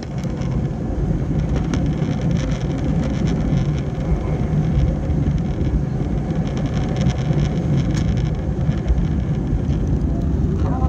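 Jet airliner taking off, heard inside the cabin: a steady, loud low rumble and roar from the engines at takeoff thrust as the plane lifts off the runway and climbs.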